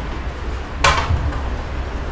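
Tableware handled at a café table: one short, sharp clink or clatter about a second in, over a steady low hum.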